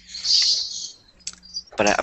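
A short hiss of breath on a headset microphone, followed by a few light clicks. A man starts speaking near the end.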